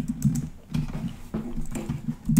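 Computer keyboard keys being pressed: a few separate, irregular key clicks.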